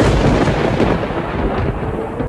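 Sound effect for an animated logo reveal: a loud, dense burst of rushing noise with a deep rumble, over a steady hum tone.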